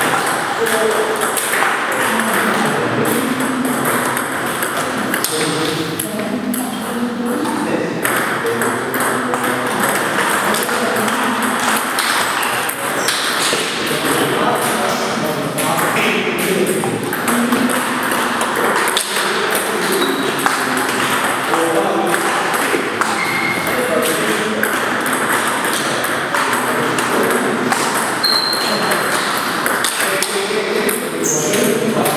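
Celluloid-type table tennis balls clicking in quick succession off bats and table tops in rallies. Under the clicks is a steady murmur of indistinct voices in a large hall.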